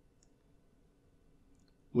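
Near silence: quiet room tone with a faint click or two.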